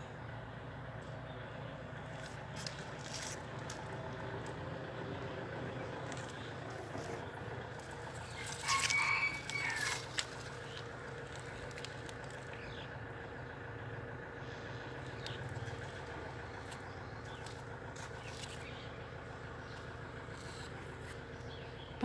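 Quiet outdoor background with a steady low hum, broken about nine seconds in by a short, louder pitched sound lasting about a second and a half.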